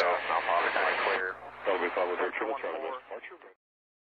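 Aviation radio voice traffic played through a PMA450A audio panel: thin, band-limited radio speech that cuts off abruptly about three and a half seconds in.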